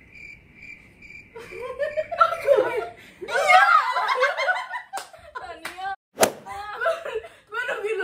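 A small group laughing and chattering together, with two sharp slaps, likely hands on hands or legs, about a second apart past the middle. A faint insect chirping repeats evenly for about the first second and a half.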